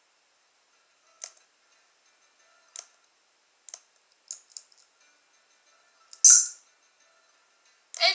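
A handful of short, sharp clicks in near silence, about one every second or so, with the loudest and longest a little after six seconds in.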